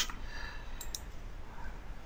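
Two faint computer mouse clicks close together about a second in, over a low steady background hum.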